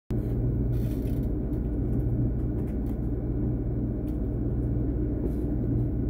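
Steady low hum of the electronics and cooling fans inside a television production truck, with a few faint clicks.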